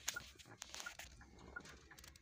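Faint clicks and rustles of a phone being handled. A faint short high pip repeats about every 0.7 seconds.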